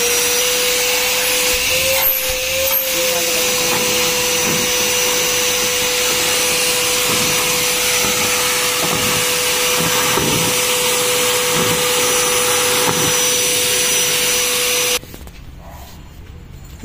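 Powertuff PT-35L 2000 W wet and dry vacuum cleaner running steadily with a constant whine over its rush of air. It cuts off suddenly near the end.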